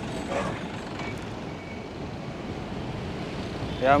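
Beastboard Aurora electric skateboard riding fast on asphalt while being pushed toward full speed: a steady road noise from its wheels rolling on the rough surface, close to the camera.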